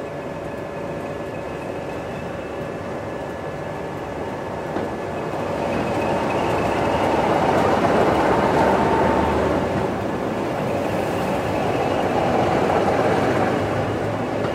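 Two diesel locomotives passing close by on the next track, their engines and wheels growing louder from about five seconds in. The sound is loudest as the first locomotive goes by and swells again near the end as the second passes.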